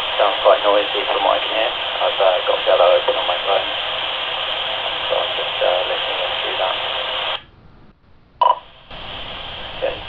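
Kenwood TK-3701D PMR446 walkie-talkie's speaker playing a received analog FM transmission: a man's voice, hard to make out, under steady hiss. About seven and a half seconds in, the signal drops and the hiss cuts off, followed by a short beep.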